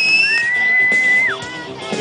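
Spectators' loud, long whistles, one held high note running into a second lower one that drops off about a second in, over crowd voices and shouts.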